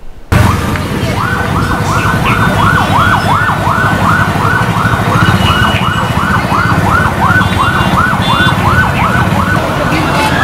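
Siren-like electronic warble, its pitch sweeping up and down about three times a second, starting about a second in, over a dense, steady low din.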